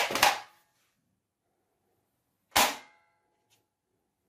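Sharp gunshot-like cracks: two in quick succession at the start and a single one about two and a half seconds in, followed by a short ringing tail.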